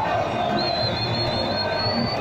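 Football stadium crowd noise, with a long, high whistle over it that comes in about half a second in and holds with a slight wobble, from a whistling firework rocket fired over the stand.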